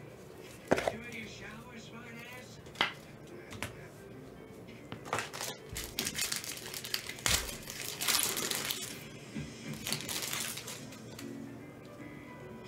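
A Panini Prizm football hobby pack's foil wrapper torn open and crinkled by hand, in a run of rustling bursts from about five seconds in, after two sharp clicks in the first few seconds. Faint music plays underneath.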